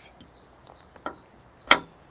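Two short, sharp clicks a little over half a second apart, about a second in and near the end, the second louder, around a brief hesitant 'uh' from a man.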